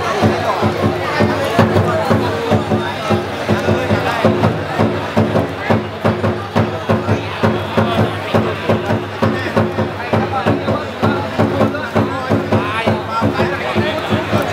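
A steady, even drumbeat of about three strokes a second over crowd chatter, typical of the drumming that accompanies a traditional Vietnamese wrestling bout, with a low steady hum under it.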